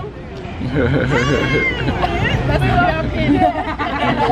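Several women's voices chattering and laughing together, with one long high vocal squeal about a second in.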